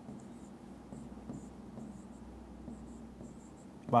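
A pen stylus writing on an interactive display screen, with faint, irregular scratches and light taps of its tip on the glass.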